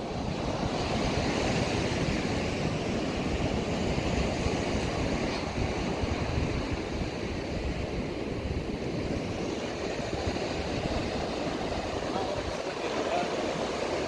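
Ocean surf breaking and washing up a sandy beach, with wind buffeting the microphone.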